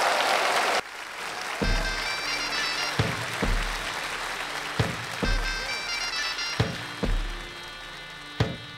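Applause that cuts off under a second in, giving way to an instrumental Balkan folk-pop intro: held chords over a deep bass note and a drum hit that recur about every second and a half to two seconds.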